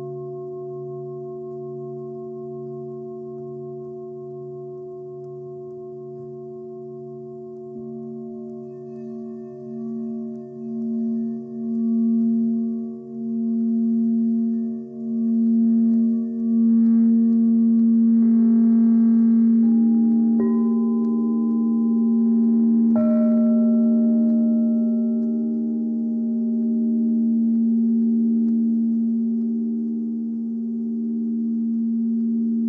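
Singing bowls ringing in long sustained tones with a slow pulsing wobble. A deeper bowl tone swells in from about eight seconds in and grows louder. Two more bowls are struck in the second half and ring on over the others.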